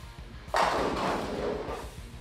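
A urethane bowling ball crashing into the pins about half a second in, the pins clattering and scattering for about a second and a half. Background music plays underneath.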